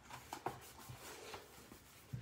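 Faint soft rustling and a few light taps of cardstock being laid onto a sticky Cricut Joy cutting mat and pressed down by hand.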